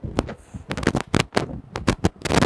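A quick, irregular run of sharp clicks and knocks, like objects being handled or tapped.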